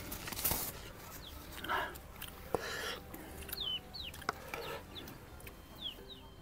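Chickens clucking, with short falling calls in the second half, mixed with a few brief rustling noises.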